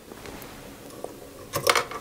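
Faint handling noise: a hand touching a plastic model's diorama base on a turntable, a light click about a second in and a few soft clicks and knocks near the end.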